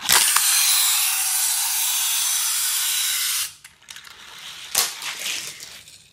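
Die-cast Hot Wheels car rolling fast along plastic Track Builder track: a steady rushing hiss that starts abruptly and cuts off about three and a half seconds in, followed by a single sharp click near five seconds.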